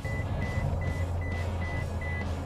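2019 Toyota Tundra's lane departure alert beeping in the cab: a steady series of short, high beeps, about two and a half a second, over the low hum of the engine and road.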